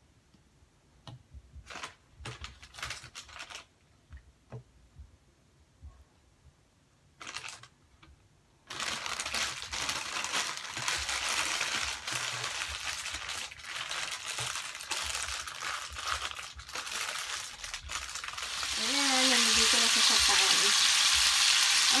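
Plastic bacon packaging crinkling in short bursts as the rolled slices are peeled apart by hand, then, about nine seconds in, bacon strips sizzling in hot oil in a frying pan, a steady hiss that grows louder near the end.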